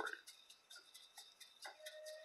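Near silence: faint room tone with light ticking, a small click near the end, and a faint steady hum starting just after it.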